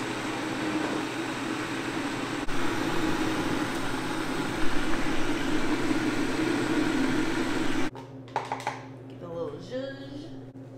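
An electric motor of a commercial juicing machine runs steadily and loudly, then cuts off abruptly about eight seconds in, leaving a low steady hum. A few clicks and handling knocks follow.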